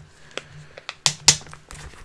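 Clear plastic comic book bag being handled and opened: a few sharp crinkles and clicks, the loudest a little after a second in.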